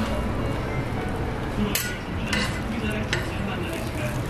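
Food sizzling steadily on a flat griddle, with three sharp clinks of a metal spatula against the griddle in the second half.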